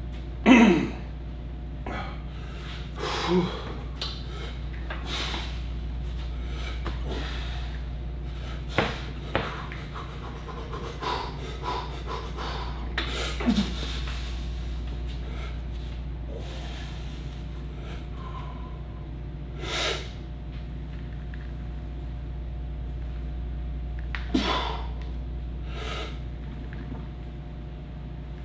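A weightlifter's sharp, heavy breaths and gasps every few seconds as he braces and works through a set of heavy paused barbell back squats. A steady low hum runs underneath.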